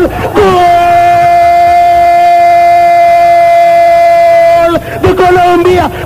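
A male football commentator's drawn-out goal cry: a single "goool" held at one steady pitch for about four seconds, with quick shouted words just before and after it.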